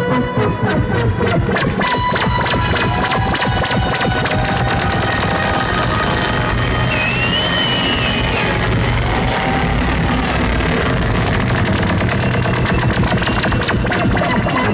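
Live electronic dance music played loud through a club sound system: a dense run of rapid clicking percussion over a steady low bass, with brief gliding synthesizer tones in the middle; the clicks grow denser near the end.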